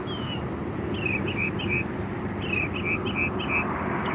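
A small bird chirping in quick runs of short falling notes, four or five to a run, over a steady low rumble of road traffic.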